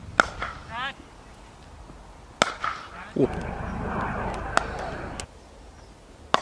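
A cricket bat striking the ball with a sharp crack just after the start, followed by a few more single sharp knocks.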